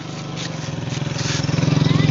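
Motorcycle engine of an approaching tricycle (motorcycle with sidecar), running steadily and growing louder as it nears.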